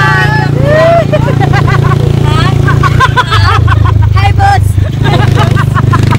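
Steady low engine rumble of a moving passenger vehicle, heard from inside its open-sided cabin, with women laughing and shrieking over it.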